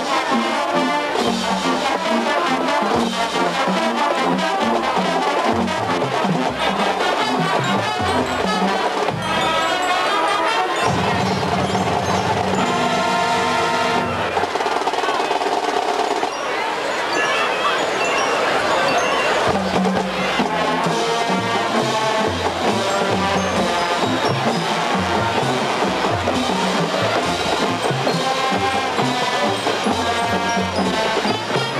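A high school marching band playing on the field: brass over a steady drumline beat, with a long held chord about halfway through.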